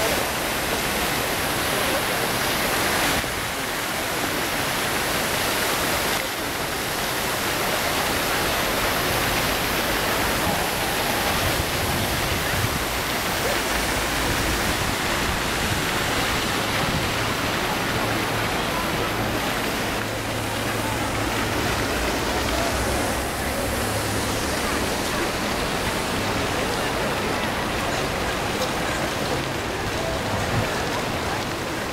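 Steady rushing splash of fountain jets, an even hiss with no rhythm, briefly dipping about 3 and 6 seconds in.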